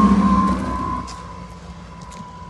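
Single-engine propeller plane passing low overhead on landing approach, its engine drone dropping in pitch and fading as it moves away, with a sharp drop in loudness about a second in.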